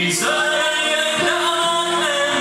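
A male singer singing long held notes into a microphone over a live band, heard through the club's sound system.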